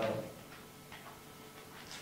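A man's drawn-out 'uh' fading away at the start, then quiet room tone with a couple of faint ticks.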